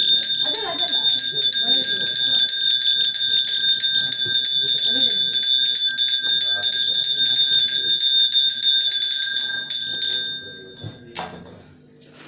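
Puja hand bell rung rapidly and without a break, its ringing tones held steady until it stops about ten seconds in, with one more stroke a second later. Voices talk underneath.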